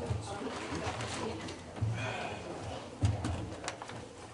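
Congregation getting to its feet: shuffling, rustling and low murmuring, with a couple of sharp knocks about three seconds in.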